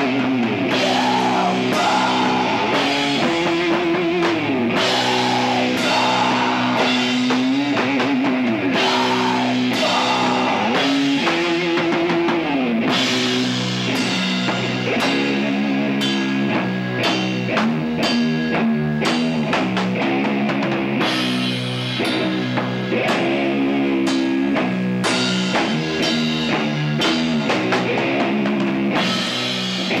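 Sludge metal band playing live: heavily distorted electric guitar holding long low chords with sliding bends, over drums. The drumming grows busier about halfway through.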